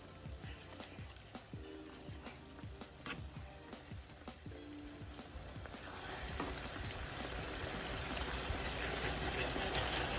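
Wooden spoon stirring a thin, buttery sauce in a pan, the liquid swishing. The stirring noise grows steadily louder through the second half, over faint background music.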